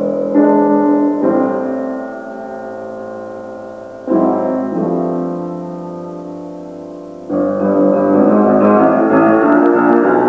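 Piano music: slow, sustained chords that fade away and are struck anew a few times, then fuller, busier playing from about seven seconds in.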